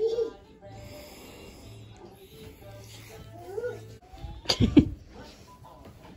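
A man asleep and snoring, a low rasp that comes and goes, with short pitched vocal sounds over it and a louder noisy burst about four and a half seconds in.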